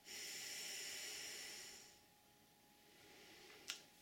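A woman's long, slow exhalation through pursed lips, a steady breathy hiss that lasts about two seconds and fades away: a deliberate calming out-breath. A small click near the end.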